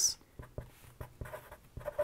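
Felt-tip marker writing numbers on a paper sheet, a run of short, faint, irregular strokes.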